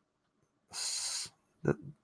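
A man's single breath into a close microphone, a hiss lasting about half a second near the middle, followed by a brief low voiced sound just before he speaks again.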